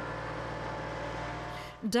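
Tractor engine running steadily under load as it pulls a ripper through the soil to break up rabbit warrens. It cuts off sharply near the end.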